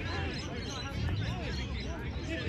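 Several voices of players and spectators talking and calling out at once across an open field, none of them clear, over a steady low rumble.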